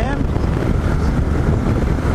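Steady wind rushing over the camera microphone at highway speed, with the Yamaha XT 660Z Ténéré's single-cylinder engine running at a steady cruise underneath.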